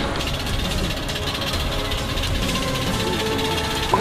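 Background music with a few steady held notes over a continuous noisy bed.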